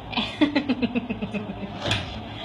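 A quick vocal sound: a run of about a dozen short pulses, some ten a second, falling steadily in pitch over a little more than a second, with a brief burst of noise near the end.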